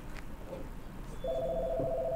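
A telephone ringing: a single two-tone electronic trill that starts a little over a second in and lasts about a second and a half.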